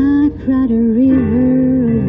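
A female singer's voice sings a slow jazz ballad into a microphone, gliding between long held notes, with a short break between phrases near the start. Piano and plucked upright double bass accompany her.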